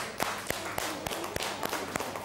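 Scattered, uneven hand clapping from a small group, several sharp claps a second.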